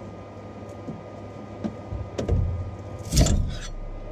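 Metal spatula scraping and prying a freshly printed ABS part off a 3D printer's build plate: scattered small clicks and scrapes, with a louder scrape about three seconds in, over a steady low hum.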